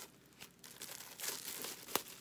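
Plastic shrink wrap being torn and peeled off a Blu-ray steelbook, crinkling in irregular bursts, with a sharp crackle near the end.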